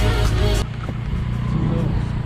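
Background music that cuts off suddenly about a third of the way in, giving way to the steady low running and road noise of a motorbike being ridden.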